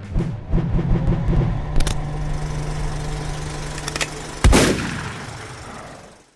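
Logo-reveal sound effects. Closing music runs out about a second and a half in, leaving a steady low hum with a brief swish just after. Near the end comes a single loud boom that rings away.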